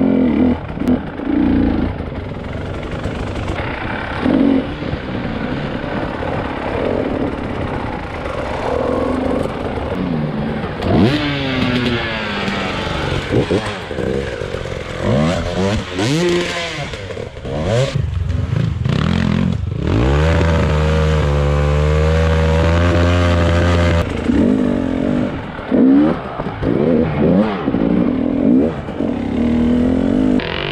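Single-cylinder two-stroke engine of a KTM 300 EXC enduro motorcycle, revving up and down as it is ridden along a forest trail. About two-thirds of the way through it holds at steady revs for a few seconds, then resumes rising and falling.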